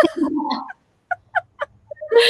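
Women laughing, the laugh trailing off into a few short, separate giggles.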